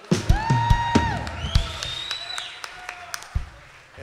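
Audience applause for a newly introduced band member, with two long whistles, the second higher and rising, and a few drum hits.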